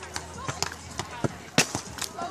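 A few sharp slaps of hands striking a beach volleyball during a rally, the loudest about one and a half seconds in, over a background of voices.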